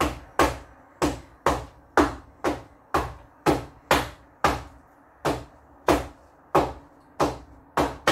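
A soap mold filled with freshly poured raw soap batter being knocked down on the floor again and again, about two knocks a second, each with a brief ring. The knocking drives trapped air bubbles up out of the soap.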